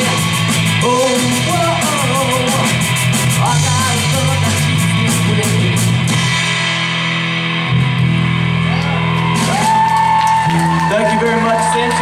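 Rock band playing live: electric guitar, bass guitar and drum kit with a sung vocal. The drum strikes stop after about six seconds, and the song ends on a long held note.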